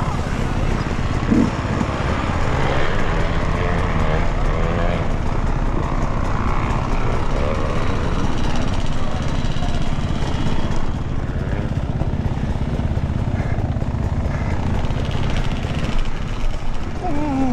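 Dirt bike engine running continuously at low trail speed, its pitch rising and falling as the throttle is worked over rough ground.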